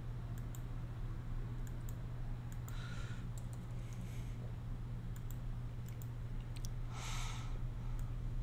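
Scattered light clicks of a computer mouse working through software menus, over a low steady hum.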